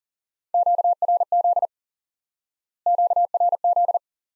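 Morse code for the Q-code QRZ ("who is calling me?"), sent at 40 words per minute as a single pure tone keyed on and off in quick dits and dahs. It is sent twice: once about half a second in, and again from about three seconds in, running on past the end.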